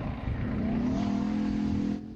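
A tank on the move: its engine revs up over the first second, then holds a steady pitch over a low rumble.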